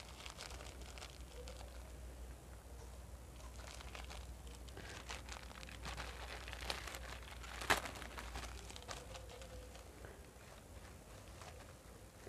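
Faint rustling and handling of tissue and a plastic hand-pump cupping set, with small clicks and one sharper click about eight seconds in.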